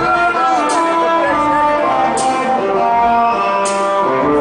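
Live amplified hip hop band music: electric guitar playing held notes over a steady beat, with a sharp drum or cymbal hit about every one and a half seconds.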